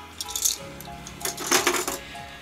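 Metal binder clips clinking and rattling as they are pulled off the edge of a 3D printer's bed plate: a short clack about half a second in, then a cluster of clatters around a second and a half in, over background music.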